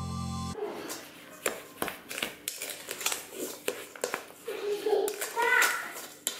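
Background music cuts off about half a second in, then a spatula stirs a wet chopped mixture in a stainless steel mixing bowl, giving irregular clicks and knocks against the metal.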